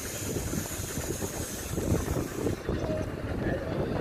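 Low, uneven noise of wind on the microphone and sea water around a dive boat, with indistinct voices in the background.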